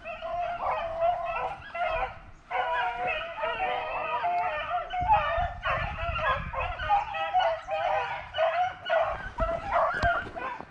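A pack of rabbit-hunting hounds baying, several dogs' voices overlapping with a brief lull about two and a half seconds in: the cry of hounds running a rabbit they have jumped.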